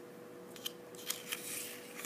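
Faint handling sounds on a tabletop: a flexible plastic ruler being moved and set down on a sheet of paper, giving a few light clicks, then a soft paper rustle near the end. A faint steady hum runs underneath.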